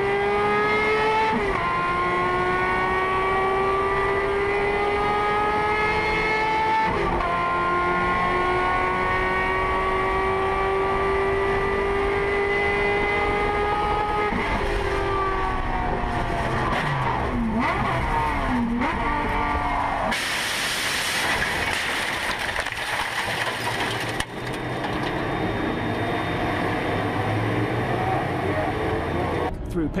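A race car's engine heard from inside the cockpit, accelerating hard and climbing in pitch, with upshifts about a second and a half and seven seconds in. Around halfway it lifts off and slows with dips in pitch, and about two-thirds in a loud rush of noise lasts for about four seconds.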